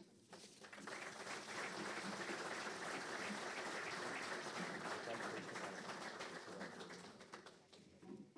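Audience applauding in a conference hall, the clapping building up quickly about half a second in, holding steady, then dying away near the end.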